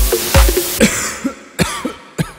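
Electronic dance music remix: a steady four-on-the-floor kick-drum beat that drops out about half a second in. The track thins to a fading hiss with a few scattered hits, a breakdown before the beat returns.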